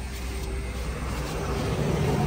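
A steady low mechanical drone from a running motor, growing slowly louder.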